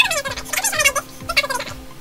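A person's voice sped up into a high, fast chipmunk-like chatter, over a steady low hum.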